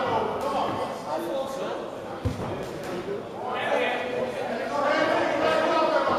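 Voices of onlookers in a large, echoing hall calling out during a boxing bout, with one short dull thud about two seconds in.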